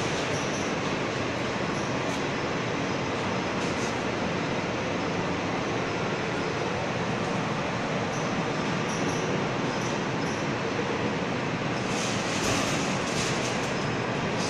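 Industrial shot blasting machine running: a steady, even rushing noise, with a few faint clicks near the end.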